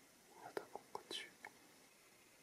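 A person whispering briefly and softly, with a few small clicks, for about a second starting half a second in.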